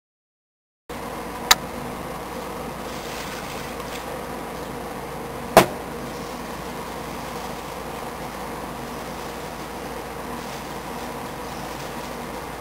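Dead silence that gives way, just under a second in, to a steady background hum. Two sharp clicks sound over it, about one and a half seconds in and again about five and a half seconds in, the second the louder.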